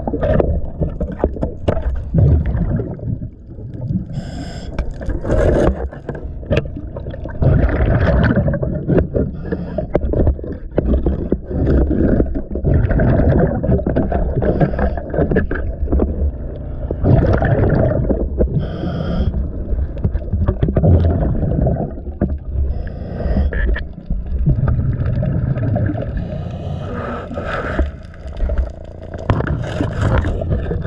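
Boat hull being scrubbed underwater by hand with a cleaning pad: an irregular, continuous scraping rasp as the growth is worked off the bottom, with the gurgle of scuba exhaust bubbles now and then.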